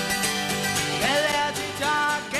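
Upbeat pop song played live: strummed acoustic guitars over a steady beat with orchestral backing, and a singing voice coming in about a second in.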